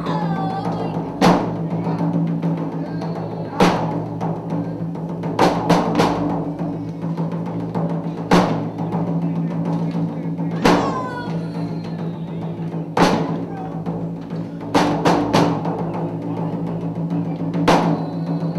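Live dramatic accompaniment: loud drum strikes, some single and some in quick runs of two or three, every two to three seconds over a sustained low droning chord.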